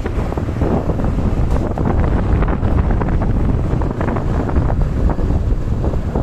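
Wind buffeting the microphone on a moving two-wheeler: a loud, steady rushing with continual low rumbling gusts.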